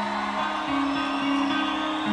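Guitar music from a live rock ballad, an instrumental passage between sung lines: plucked and strummed chords with held low notes that change pitch about every half second.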